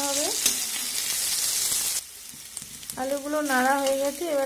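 Potato chunks sizzling as they fry in hot oil in a metal wok, with a metal spatula stirring and scraping. The loud sizzle cuts off abruptly about halfway through and is much quieter after.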